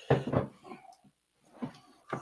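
A man's brief wordless vocal sounds: one near the start and a shorter, fainter one near the end.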